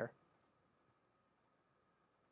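Near silence with a few faint computer mouse clicks as pages are advanced, one clearest just under a second in. A man's word trails off at the very start.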